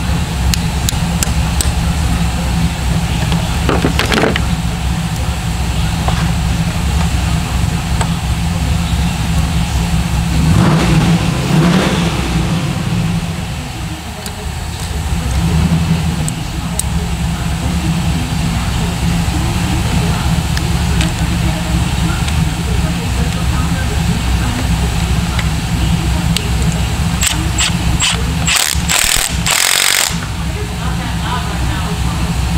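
Steady low machinery drone, with scattered sharp metal clicks and a quick run of them near the end as a tool works the valve springs on the engine's cylinder head.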